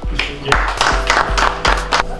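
A small group applauding, with many quick, irregular claps starting about half a second in, over music playing underneath.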